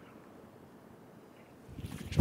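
Faint outdoor ambience with light wind noise on the microphone while a golfer sets up over the ball. Near the end a rising rush of noise begins, just ahead of the drive.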